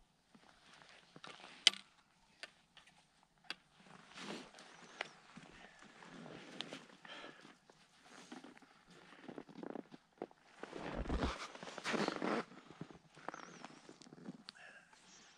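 Skis and boots crunching and scraping on crusty, wind-packed snow, with scattered sharp clicks, as skiers shuffle in place. The scraping is busiest and loudest about eleven to twelve seconds in.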